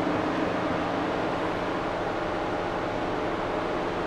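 Steady background hiss with a faint hum and no distinct events.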